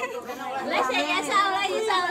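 A small group chattering, several voices talking over one another at once.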